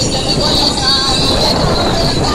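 Engine and road noise of a ride through street traffic, with a steady high-pitched whine over it.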